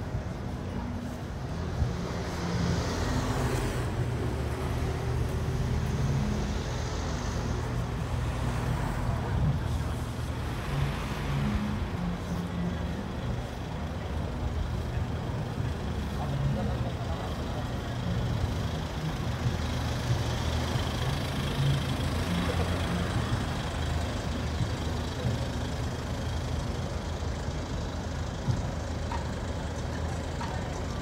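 Busy city street ambience: road traffic running steadily with a low engine rumble, and people's voices nearby.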